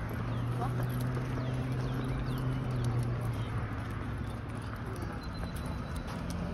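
Outdoor street sound: a nearby vehicle's engine hums steadily through the first half and then fades out, under light footsteps and small clicks on the pavement.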